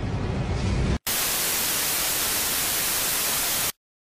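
Loud, even hiss of TV-style white-noise static. It starts abruptly about a second in and cuts off suddenly near the end into dead silence. Before it comes the last second of a bass-heavy, noisy countdown soundtrack.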